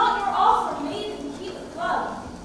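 A young woman's voice delivering spoken lines in a stage play, loudest in the first half second.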